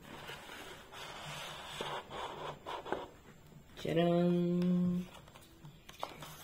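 Paper leaflet and cardboard box insert rustling and scraping as they are slid and lifted out of a box, with a few light taps. About four seconds in, a woman's voice holds one steady note for about a second.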